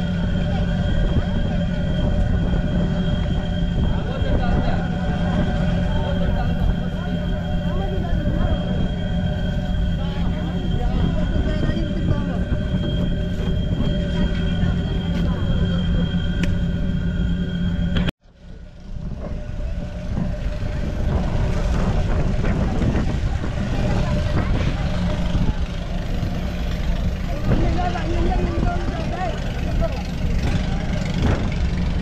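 A fishing boat's engine running steadily, with voices in the background. Just past halfway the sound cuts out abruptly and returns as a busier din without the engine's steady tones.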